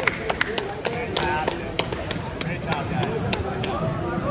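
A few people clapping: sharp, uneven claps, several a second, over background voices and chatter.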